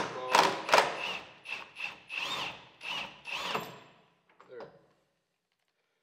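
Cordless impact wrench with a 19 mm socket hammering in a run of short bursts, with a high motor whine, as it loosens a fuel-tank strap nut. It stops after about four seconds.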